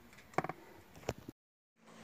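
Faint handling noise: a few short clicks and knocks, then about half a second of dead silence.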